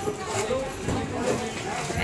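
Indistinct voices and chatter in a busy sweet shop, with a few short crinkles of a thin plastic bag being handled early on.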